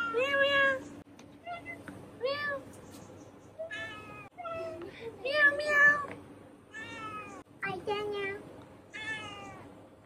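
Domestic cat meowing over and over, about nine separate arched meows roughly a second apart, the loudest ones about halfway through.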